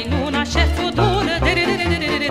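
Romanian folk song from Bucovina: a woman's voice sings a wavering, heavily ornamented melody over band accompaniment with a steady, regular bass.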